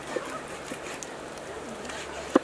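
Cleaver slicing through raw pork belly, its blade tapping softly on a wooden chopping board a few times.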